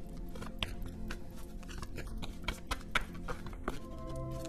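Tarot cards being shuffled and handled by hand: irregular papery clicks and flicks, over soft background music.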